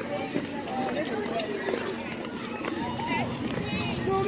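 People talking in the crowd at once, their words not clear, over a steady low hum.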